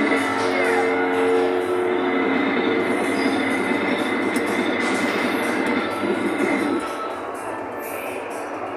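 Kiddie ride's drive mechanism running, its wheels rolling under the ride with a steady rumble and a few held tones over the first few seconds, with ride music mixed in; it drops quieter about seven seconds in.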